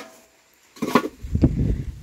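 Hollow clay bricks clattering and scraping against each other as they are handled and set down on a brick stack, a run of sharp knocks starting just under a second in.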